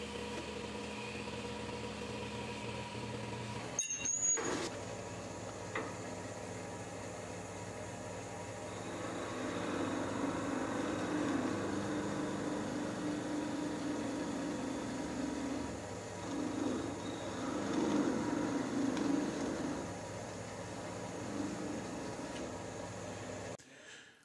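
Wood lathe running steadily with a motor hum while a small lacewood whistle spins in its chuck. From about nine seconds in, a parting tool cuts into the spinning piece, giving a louder, uneven sound for roughly ten seconds.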